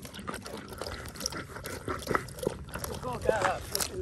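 German shepherd lapping water from a collapsible bowl: a quick run of wet laps. A brief voice is heard near the end.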